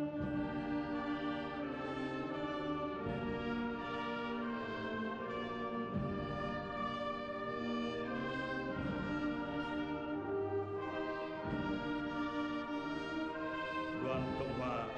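Slow, solemn funeral music from a brass-led orchestra, held chords and a French-horn-like melody, with a soft low beat every few seconds.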